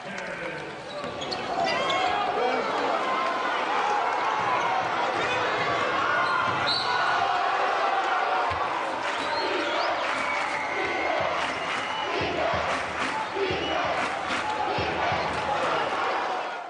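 Crowd noise in a basketball gym, a steady wash of many voices, with a basketball bouncing on the hardwood court, more often in the second half.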